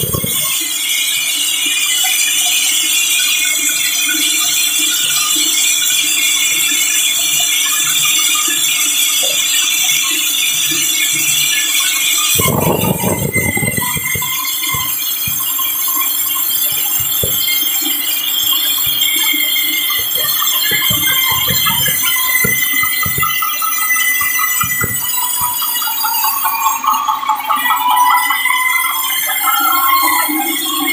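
Sawmill band saw cutting lengthwise through a large log, its blade giving a steady, high-pitched metallic ringing whine. A low rumble comes about twelve seconds in, followed by scattered knocks.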